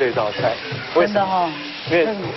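Beef steak searing in a hot grill pan, a steady sizzle under a man's voice.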